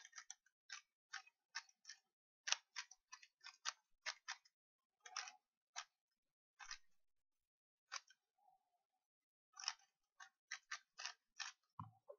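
Faint clicks of a GAN 3x3 speed cube's layers being turned by hand while it is scrambled, in irregular runs of several a second with a pause about seven seconds in. A soft thump near the end.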